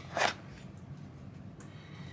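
A brief scrape of a cardboard soap box being slid out of its slot in a paperboard gift-box tray, just after the start.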